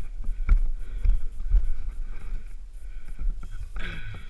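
Mountain bike rolling over a rough, stony dirt track, heard through a helmet camera: a steady low rumble of wind and tyres, with the bike rattling and knocking over bumps about twice a second. A louder scrape comes near the end as the bike slows.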